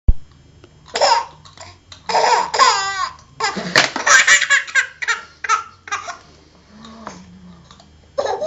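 A baby laughing in repeated bursts of high, wavering laughs, loudest in the first half and dying down after about six seconds. A sharp click at the very start.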